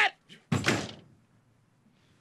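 One bang of a door about half a second in, dying away within half a second.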